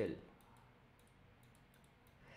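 Faint, irregular clicking of a stylus on a tablet surface as a word is handwritten in digital ink, a few small taps close together, just after the end of a spoken word.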